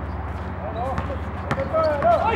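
A basketball bouncing on a hard outdoor court: two sharp bounces about half a second apart around the middle, with players' voices calling out.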